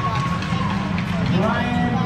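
Indistinct voices in an ice arena over a steady low hum.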